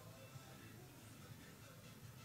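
Near silence: faint room tone with a faint steady low hum.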